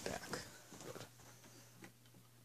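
Quiet handling noise as a tablet is picked up and moved, with faint rustles and a small click near the end. A low steady hum sets in about a second in.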